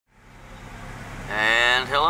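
Steady low hum of a car driving, heard inside the cabin, fading in from silence. About a second and a half in, a person's voice starts speaking over it.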